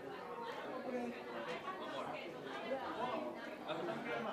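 Many people chatting at once in a large hall, voices overlapping with no one speaker standing out.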